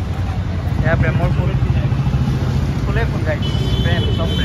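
Steady low rumble of street traffic, with people talking in the background and a thin high tone coming in near the end.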